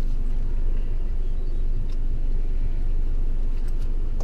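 Boat engine running with a steady low rumble, with a couple of faint clicks from the fish being handled on the gunwale.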